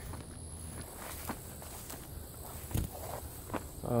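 Footsteps through tall grass and weeds: several separate steps, with one heavier thump a little under three seconds in.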